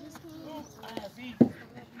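Faint voices of players and spectators at a youth baseball field, with one short, sharp, loud sound about a second and a half in.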